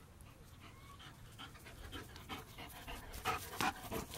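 A large dog panting in quick, even breaths, growing louder as it runs up close.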